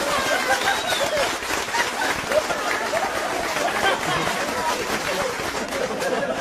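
Audience laughing and applauding at a joke: many voices laughing over continuous clapping.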